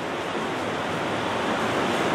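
Steady, even hiss of room and recording background noise, with no distinct events.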